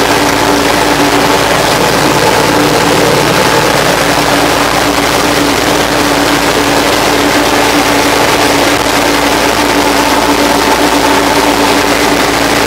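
Torpedo TD55A Adriatic tractor's diesel engine running steadily under way, holding an even pitch and level throughout.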